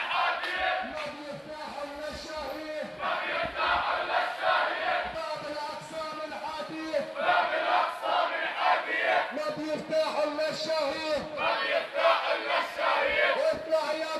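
Crowd of marchers chanting protest slogans, many voices together in repeated phrases a few seconds apart.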